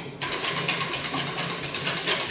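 A utensil scraping rapidly and steadily inside a red plastic sieve over a steel bowl, working a freshly poured mixture through the mesh.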